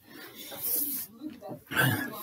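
A man breathing hard with exertion: a hissing exhale about half a second in, then a loud grunting breath near the end.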